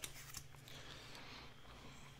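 Faint handling sounds of paper crafting: a clear acrylic stamp block lifted off a stamped paper and the paper shifted on a cutting mat, with a light tick and a soft rustle over a low steady hum.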